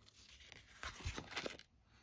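Faint paper rustling from a spiral-bound sticker pad being handled, a few short scrapes about a second in.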